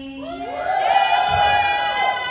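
A woman's voice amplified through a microphone and PA, gliding up from a lower held tone into a long, high drawn-out call that is held until the end.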